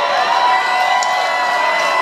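Concert crowd cheering, with a few long held whoops over the general crowd noise.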